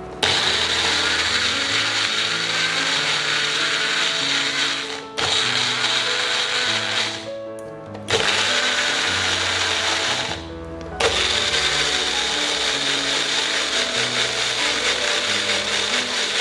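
Electric blender running at high speed, grinding perilla leaves, garlic, nuts and olive oil into a green pesto. It runs in four bursts with brief pauses about 5, 7 and 10 seconds in.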